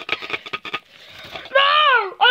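A paper mailing envelope crinkling and tearing as hands rip it open. Near the end a child's voice cries out loudly, falling in pitch.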